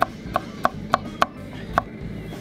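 Kitchen knife chopping pickles on a wooden cutting board: about six sharp knocks, roughly three a second, with a slightly longer gap before the last.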